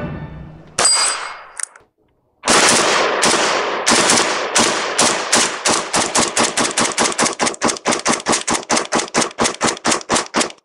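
AK-pattern rifle fired in a long string of rapid single shots, starting about two and a half seconds in and speeding up to about five shots a second, each shot a sharp crack.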